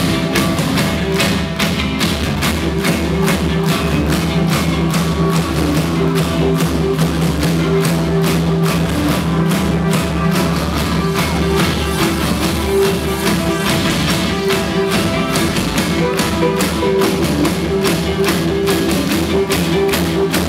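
Live indie rock band playing loudly through a club PA: a drum kit keeps a steady beat under sustained bass and electric guitar chords.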